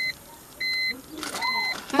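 A car's electronic warning chime: short, high beeps of one pitch, repeating evenly a little more than once a second, three of them in all.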